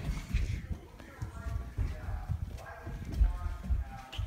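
Rapid running footsteps on a hardwood floor, irregular thumps mixed with the handling noise of a jostled handheld phone, with faint voices in between.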